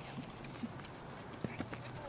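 Hooves of a cantering horse on a sand arena footing: faint, soft thuds over a low steady hiss.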